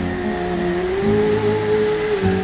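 A vehicle engine hum with a steady tone that rises in pitch about a second in and then holds, over background music.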